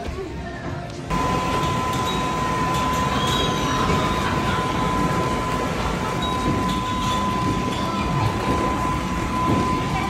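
A steady rushing noise with one constant high whine through it, like a machine running. It starts abruptly about a second in and holds level.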